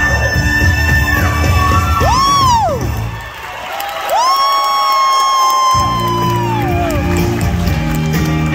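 Live band and male vocal group performing a Motown-style number, with long high held vocal notes and a swooping glide. The band drops out for a couple of seconds in the middle, under a held note, then comes back in.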